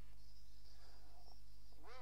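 Steady low mains hum from an open microphone line, with a faint high hiss in the first half. A faint pitched call rises just at the end.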